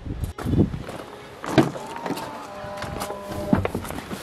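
Knocks, clicks and low thumps as someone walks up to a pickup truck and opens its door, with a faint steady tone sounding in the middle.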